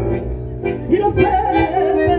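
Live tango music: a woman singing over electric keyboard and squeeze-box accompaniment, with a wavering, gliding note about a second in.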